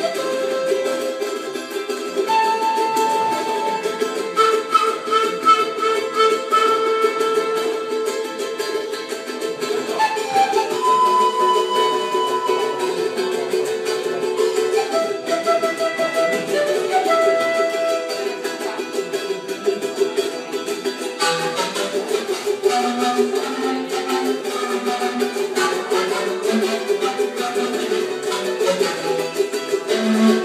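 Live solo instrumental on a small acoustic plucked string instrument: a melody of held notes over a steady low drone, the playing turning to busier strumming about two-thirds of the way through.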